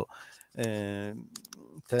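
A man's single drawn-out hesitation sound, a held 'eee', about half a second in, then a few light clicks of typing on a computer keyboard near the end.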